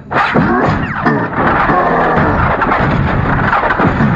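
Loud, dense mix of music and cartoon sound effects running without a break.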